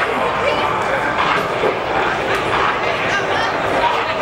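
Many overlapping voices of players and coaches talking and calling out at once, echoing in a large indoor sports hall.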